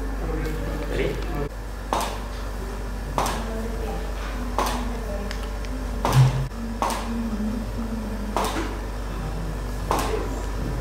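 Camera shutter clicking about seven times, single sharp clicks roughly every second or so, over a steady low electrical hum.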